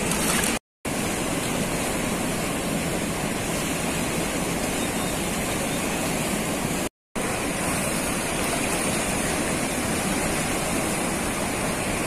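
Floodwater rushing steadily out through the open crest gates of the Somasila dam spillway and churning downstream, a constant wash of water noise. It is broken by two brief cuts to silence, one about a second in and one about seven seconds in.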